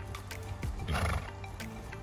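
Background music with a steady beat, and about a second in a short, loud horse vocal sound, a brief whinny or blow, rising above the music.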